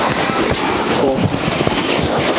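Dense crackling rustle with many small knocks as a fabric-covered sofa-cum-bed is handled and pushed closed.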